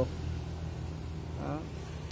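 A steady low hum of a running motor, with one short voice sound about one and a half seconds in.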